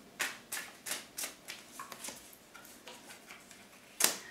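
A tarot deck being shuffled and handled: a run of light, crisp card clicks, quickest in the first second and a half and then fainter and sparser.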